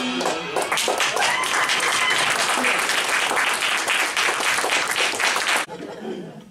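A singer's last held note ending, then a small audience applauding, which cuts off suddenly near the end.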